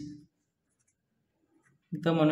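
Faint, short scratches of a pen writing on notebook paper.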